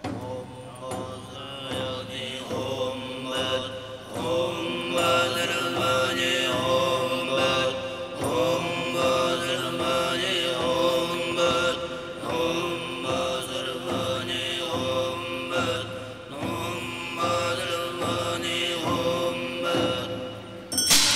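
Tuvan throat singing: a steady low drone with a bright overtone melody moving above it, over a regular beat.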